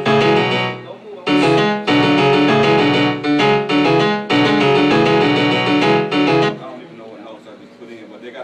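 Piano-like keyboard chords played as a series of held chord stabs, stopping about six and a half seconds in; after that only room noise and faint voices remain.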